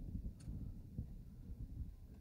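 Quiet room tone: a faint low rumble with a small click about half a second in.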